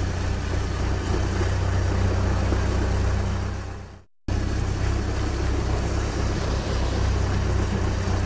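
Cartoon engine sound effect: a steady, low idling rumble. It fades out about halfway through, cuts to a brief silence, then starts again at the same level.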